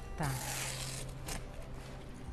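Masking tape being peeled off a freshly painted board while the paint is still wet, a rasping rip lasting most of the first second, with a shorter tug about a second later.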